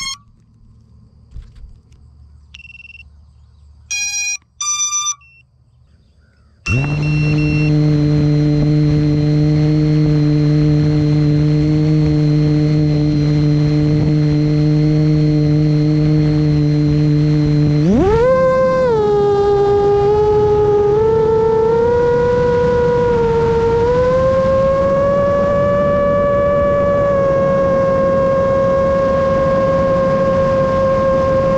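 A few short electronic beeps, then about six and a half seconds in the four brushless motors of a 6S 7-inch FPV quadcopter (HYPERLITE 2408.5 1922Kv, 7-inch props) spin up and idle with a steady whine. About eighteen seconds in the throttle comes up: the whine jumps in pitch and wavers as the quad lifts off and climbs, then holds steady.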